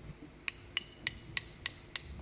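Drummer's count-in, drumsticks clicked together: six sharp, evenly spaced clicks, about three and a half a second, over faint room tone.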